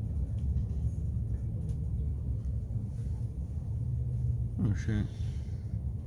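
Steady low rumble inside the passenger cabin of a Stadler ETR 350 electric multiple unit rolling slowly through a station. A short voice is heard briefly near the end.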